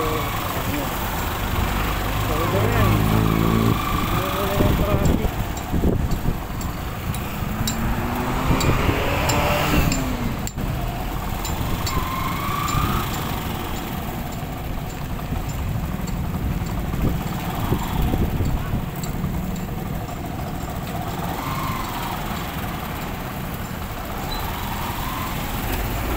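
Motorcycle engine running while riding slowly through congested traffic, other vehicles' engines around it. The engine pitch rises and falls with the throttle, with a clear rise about eight to ten seconds in.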